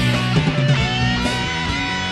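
Live rock band playing, led by an electric guitar playing sustained notes, some of them bent.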